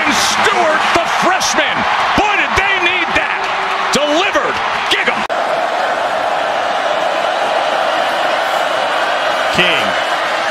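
Stadium crowd cheering loudly after a touchdown, with excited voices shouting over it. About five seconds in it cuts to a steadier crowd noise.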